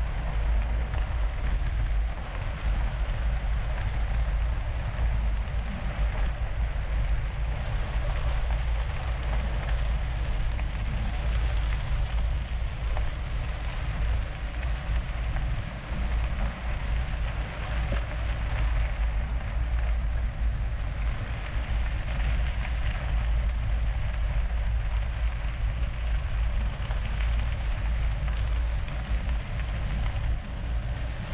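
Mountain-bike tyres rolling over a gravel road in a pack of riders, a steady gritty hiss, over a constant low rumble of wind and vibration on the bike-mounted camera's microphone.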